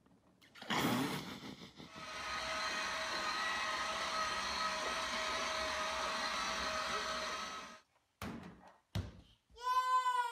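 Electric motor of a child's battery-powered ride-on toy train running: a steady whine with several even tones for about six seconds, then it cuts off.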